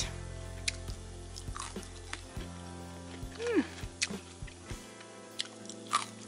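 Someone chewing a bite of crispy pan-fried tofu, a few short soft clicks of chewing, under quiet background music.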